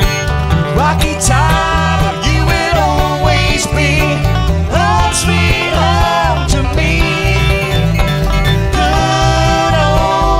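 Bluegrass band playing live, an instrumental break without singing: banjo, strummed acoustic guitars and upright bass, with the bass keeping a steady beat under a lead line of sliding notes.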